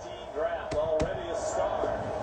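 Quiet background voices, with two short, sharp knocks about three quarters of a second and one second in.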